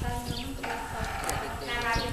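A Buddhist monk chanting a blessing in long held tones, the pitch shifting about half a second in. Beneath it, water splashes irregularly as it is poured from a plastic bowl over a person's head.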